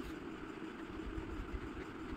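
Faint steady background hum with a low rumble, and no distinct strokes or scratches.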